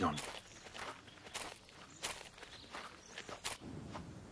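Faint, irregular footsteps of a few people walking together.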